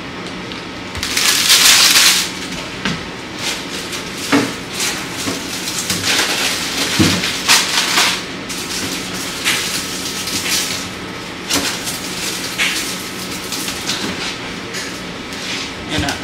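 Kitchen handling noise: plastic food packaging crinkling and produce and small items knocking on the counter. The loudest is a burst of crinkling about a second in, then scattered rustles and taps over a steady low hum.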